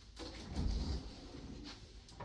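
Bifold closet door being pulled open: a short rumbling scrape about half a second in and a light click near the end.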